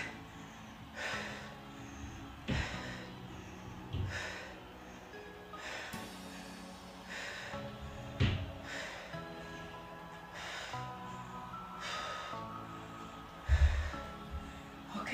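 Quiet background music with the exerciser's sharp, forceful breaths coming every one to two seconds as she holds a side plank, and a low thump near the end.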